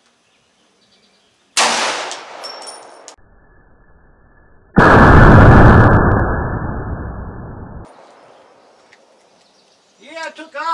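A single .50 AE Desert Eagle pistol shot about one and a half seconds in, a sharp crack that rings off over a second or so. A few seconds later a louder, deeper and drawn-out boom follows, dying away over about three seconds: the same shot played back slowed down.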